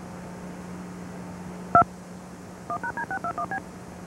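DTMF touch-tone cue tones recorded on a Disney VHS tape's audio track: one beep about two seconds in, then a quick string of seven beeps about a second later. The beeps play over a steady tape hum and hiss.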